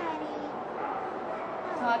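Afghan Hound whining: short high whines, one sliding down in pitch at the start and another near the end.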